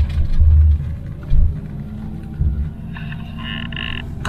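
Motorhome driving, with a steady low rumble of engine and road noise heard from inside the cab and a few louder low surges. A faint steady higher tone comes in near the end.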